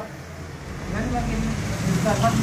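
Low rumble with faint, indistinct voices of a small crowd, building slightly toward the end.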